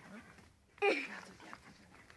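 Siberian husky giving a single short call about a second in, starting high and falling in pitch.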